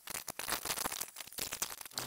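Small metal hardware and tools clicking and rattling in quick, irregular succession.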